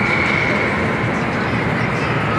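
Steady mechanical din of an indoor amusement park, with a thin high whine through the first second or so.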